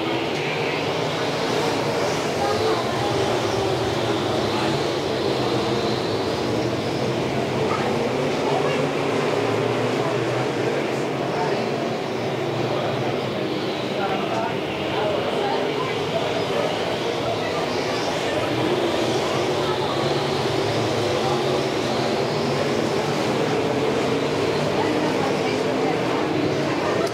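A field of dirt-track Modified Street race cars running at racing speed in a pack, a loud steady engine drone. Engine pitch rises and falls every few seconds as the cars pass and power through the turns.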